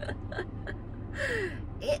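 A woman's soft, trailing laughter with a sharp breath drawn in about a second and a half in, over a steady low hum in a car cabin.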